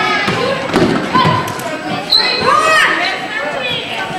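Basketball being dribbled on a hardwood gym floor, a few sharp bounces, with players and spectators calling out in the large, echoing gym.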